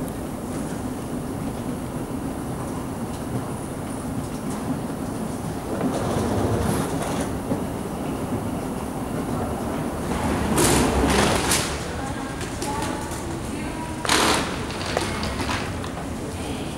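Steady low rumble of a large indoor space, with louder rushing noises about six seconds in, again for about a second from ten seconds in, and briefly at fourteen seconds.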